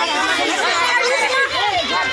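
A crowd of children's voices talking and calling out over one another, with no single voice standing out.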